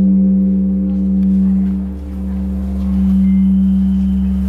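A large bronze Korean temple bell ringing on after a strike: a long low hum that swells and ebbs slowly, its higher overtones dying away.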